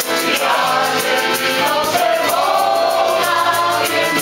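Several voices singing a song together over a steady rattling percussion beat.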